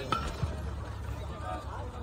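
Faint, indistinct voices of players and people around a baseball field over a low steady rumble, with a short click just after the start.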